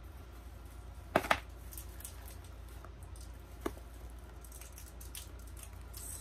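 Handling sounds from a small satin evening bag being turned over and opened: two sharp clicks in quick succession about a second in, a smaller click a little past halfway, and faint rustling.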